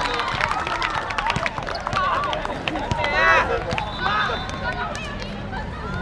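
High school basketball players calling out and chattering on an outdoor court over running footsteps and many short sharp clicks. A loud call about three seconds in stands out.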